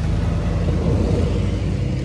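A steady low rumble with no clear rhythm or pitch.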